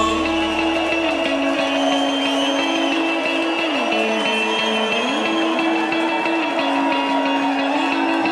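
Instrumental break of a Tamil film song: sustained notes that slide up and down between two pitches about once a second, with the deep bass dropping away in the first second.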